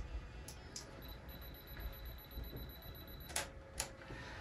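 Faint sharp camera shutter clicks, a pair about half a second in and another pair near the end, with a faint high steady whine between them.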